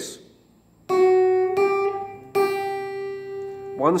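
Electric guitar picking three single notes on one string, the last ringing for over a second. It is one string of a chord riff played a note at a time, the way each string would be overdubbed separately to build up a jangly layered part.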